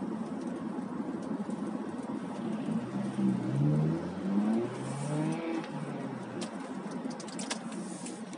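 Car driving, heard from inside the cabin: steady road and engine noise. In the middle an engine note rises in pitch twice in a row, and a few light clicks come near the end.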